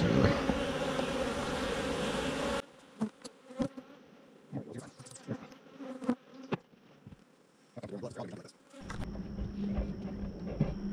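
Honey bees buzzing in a steady swarm around an open hive, jumpy and defensive, which stops abruptly under 3 seconds in. Then a few light wooden knocks as a hive cover is handled and set back onto the box, with a steady hum returning near the end.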